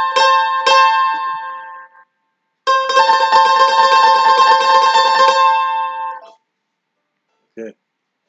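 Mandolin playing a C and A double stop: a couple of picked strokes ring out together and fade over about two seconds. Then the same two notes are tremolo-picked rapidly for about three and a half seconds and stop short.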